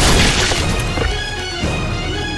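A sudden loud crash sound effect at the start, fading out over about half a second, over steady dramatic background music.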